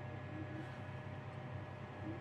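John Deere tractor engine running at about 1,300 rpm, heard from inside the cab as a low steady hum while the e23 transmission drives the tractor at three miles an hour in ninth gear. The engine is held this low because that is all the light load needs.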